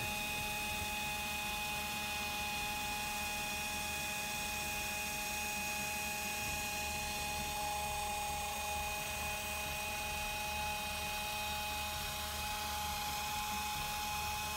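Small 3-inch pneumatic rotary polisher running steadily with a foam cutting pad on car paint: an even air-motor whine over a steady hiss that holds the same pitch throughout.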